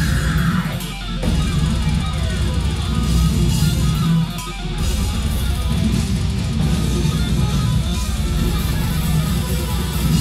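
Death metal band playing live through a club PA: distorted electric guitars over drums with heavy kick drums. The kick drums briefly drop out about a second in and again a little after four seconds in.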